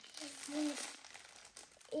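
Printed plastic treat bag with a dog cookie inside crinkling as it is handled and turned over, most of it in the first second.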